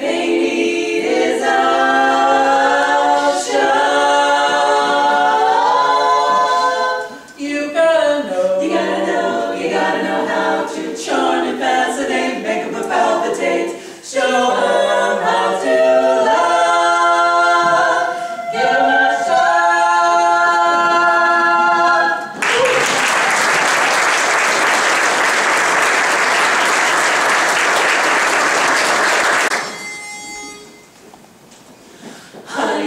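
Women's a cappella quartet singing in four-part harmony. The song ends about 22 seconds in and is followed by audience applause.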